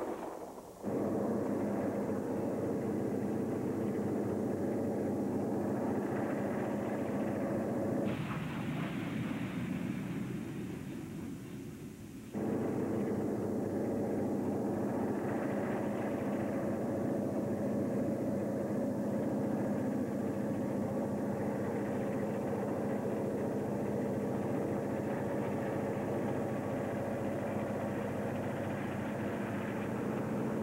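Steam locomotive working hard up a grade: a steady rumble of exhaust and running gear with sharp beats. The sound changes abruptly about a second in and again about eight and twelve seconds in, dipping in between.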